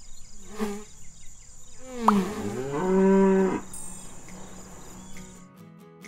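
A cow mooing once about two seconds in: one long call that drops in pitch and then holds steady. Plucked-guitar music begins near the end.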